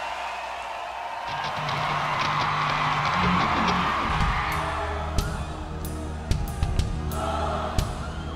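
Rock-festival crowd cheering, then a low sustained keyboard tone comes in about a second in, and sharp percussive hits start about halfway through: the opening of a symphonic metal song's intro.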